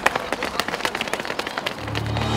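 Footsteps of several runners sprinting on a synthetic athletics track: a quick, irregular series of sharp footfalls.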